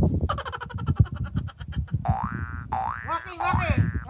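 A springy, boing-like twang: a fast rattle that then gives way to two quick upward pitch sweeps, with voices coming in near the end.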